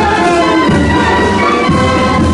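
Spanish naval academy military band playing while marching, its brass sounding full held chords that change from note to note over a deep low end.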